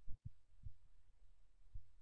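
A faint low hum with a few soft, low thuds.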